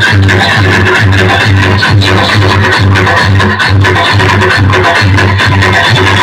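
Loud electronic dance music played through a stack of horn loudspeakers, with a heavy, steady bass beat.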